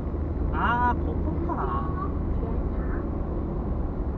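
Steady low rumble of a car driving, heard from inside the cabin, with two brief voice sounds near the start.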